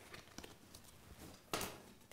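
Quiet handling sounds of a hand drawing a playing card out of a jacket pocket, with one short sharp snap about one and a half seconds in.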